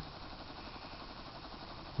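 Homemade corona electrostatic motor running slowly under heavy load from a ring magnet and pickup coil, giving a steady, faint hiss with no clear tone.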